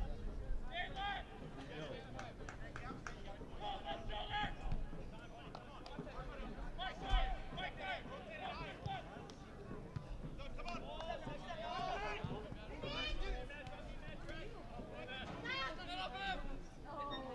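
Players and coaches shouting to each other across an open soccer pitch during play, in short, scattered calls. A single sharp thump comes about seven seconds in.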